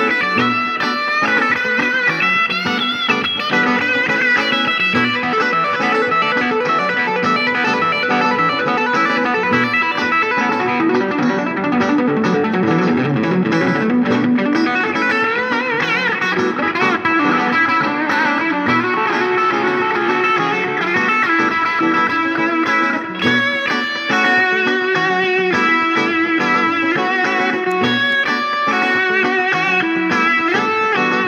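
A 1976 Fender Stratocaster electric guitar with three single-coil pickups, played through an amplifier: a continuous run of single-note lead lines and chords, with wavering, bent notes about halfway through.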